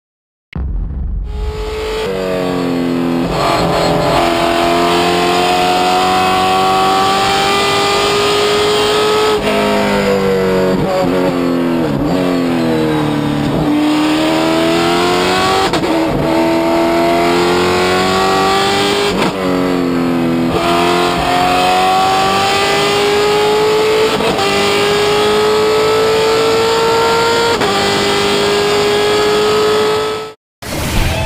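Race car engine heard from inside the cockpit, starting about a second in and revving up through the gears, its pitch climbing and dropping back with each upshift. About halfway through the pitch falls away as the car slows, then climbs again as it accelerates.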